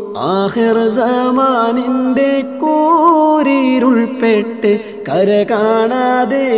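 A man singing a Malayalam mappila devotional song, holding long notes that waver and bend in ornamented turns.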